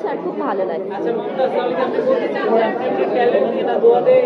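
Indistinct speech, with several voices talking over one another.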